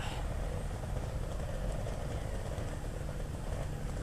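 A motorcycle engine idling steadily, a low, even rumble.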